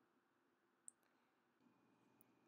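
Near silence: room tone, with one faint, brief click about a second in.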